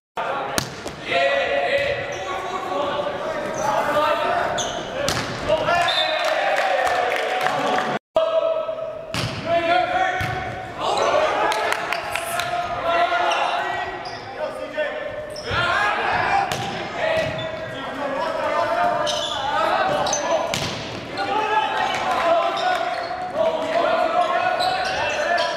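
Indoor volleyball rally in an echoing gym: sharp slaps of the ball off players' hands and arms, with players calling out and spectators talking throughout. The sound cuts out completely for an instant twice, just after the start and about eight seconds in.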